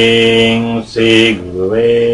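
A man chanting a guru mantra in a low, drawn-out voice, holding each note steady. The chant breaks off briefly a little before the middle, then dips and rises in pitch into another long held note.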